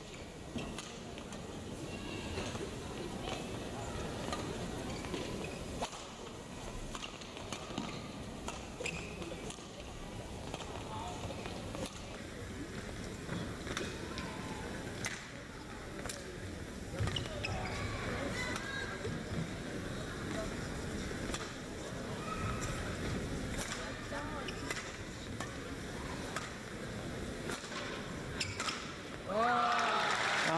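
A long badminton rally: rackets strike the shuttlecock with sharp hits at irregular intervals, about one a second, over the murmur of an indoor arena crowd. Just before the end the crowd breaks into louder noise as the rally ends.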